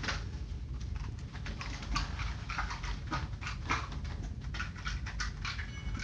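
Dog chewing ice pieces: a run of irregular, crisp crunches.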